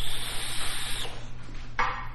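Long draw on a vape: a steady hiss of air pulled through the tank, with a thin high whine as the coil fires, cutting off about a second in. Near the end comes a short breath as the vapour is blown out.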